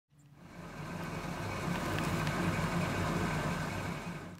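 A classic pickup truck's engine idling with a steady low rumble, fading in over the first second.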